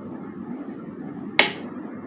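A steady low hum, broken about one and a half seconds in by a single sharp plastic click: a makeup compact's lid snapping shut.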